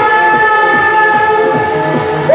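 Music: a steady chord of several tones, held for about two seconds, in the amplified backing of a live pop song sung by a woman.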